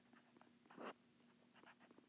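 Faint scratches and taps of a stylus writing digits and a plus sign on a tablet screen, with one slightly louder stroke a little under a second in.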